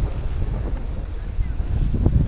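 Wind buffeting the microphone: an uneven low rumble with a steady hiss over it.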